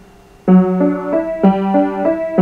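Piano playing a repeating three-note pattern, starting about half a second in: a low note struck and held, then two higher notes (D and E) after it, played twice.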